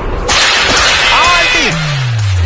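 A loud whooshing swish of a long rope whirled through the air, starting suddenly and lasting over a second, followed by a low tone sliding down in pitch near the end.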